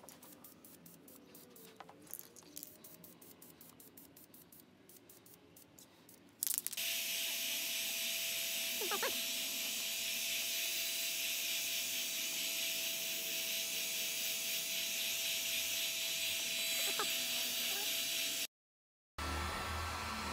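Aerosol can of high-temperature paint: a faint quick rattle of the can's mixing ball, then a sudden long, steady spray hiss from about seven seconds in as a light coat goes onto the exhaust header. The hiss breaks off in a short cut near the end.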